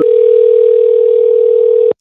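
Telephone ringback tone over the phone line while an outgoing call rings: one steady ring of about two seconds that cuts off suddenly.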